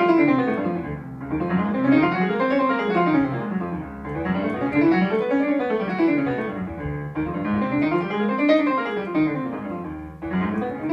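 Digital piano on a grand piano voice, with major scales played quickly up and down by both hands through one key after another. Each scale takes about three seconds, with a short break between keys.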